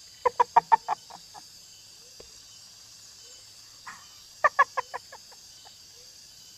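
A person laughing in short, quick bursts: a bout of about six 'ha's at the start, then a second, shorter bout about four and a half seconds in.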